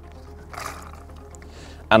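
Water and soaked expander pellets poured from a pellet pump into a bait tub: a brief splash about half a second in, then a thin trickle.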